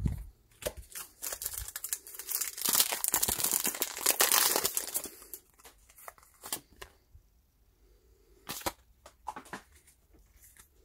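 Foil wrapper of a Pokémon booster pack being torn open and crinkled, a dense crackling spell of about three seconds, followed by scattered light clicks of cards being handled.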